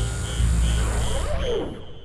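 Tense electronic film score: a throbbing low drone with a short high beep repeating at an even pace, a bit under three times a second. It fades away over the last half second.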